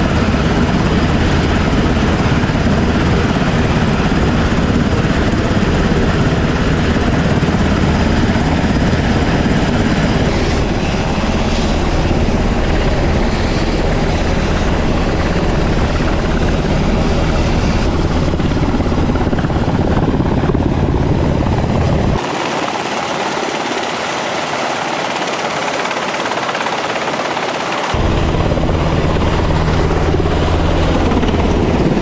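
US Navy MH-60 Seahawk helicopter running on a carrier deck, its turbines and main rotor giving a loud, steady low thrum under a rushing hiss. From about two-thirds of the way through, the deep rotor sound drops out for several seconds, leaving only a thinner hiss, then comes back.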